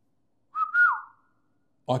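A man whistling a short family call through his lips: one brief note held, stepping up and then sliding down in pitch.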